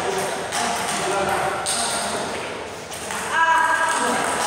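Indistinct voices in an echoing hall between table tennis points, with the light ticks of a table tennis ball as play resumes near the end.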